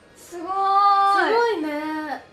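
Speech only: a young woman's long, drawn-out exclamation "sugoi" (amazing) in a sing-song voice, held high and then dropping in pitch, followed by a quicker "sugoi ne".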